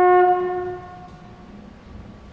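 Jazz band brass, led by a trombone, holding a long sustained note that stops about half a second in and rings briefly in the hall.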